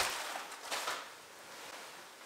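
Fabric of a giant bean bag rustling and shifting as a person sinks into it. The loudest burst comes right at the start, a second one follows just under a second in, and then the sound fades.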